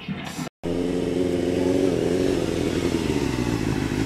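Electric guitar playing through an amplifier, cut off abruptly about half a second in. Then a motor vehicle's engine runs steadily, its pitch falling slightly a little after two seconds.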